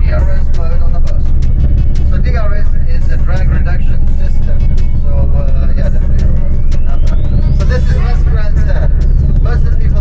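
Steady low engine and road rumble inside a moving tour bus, with voices talking over it.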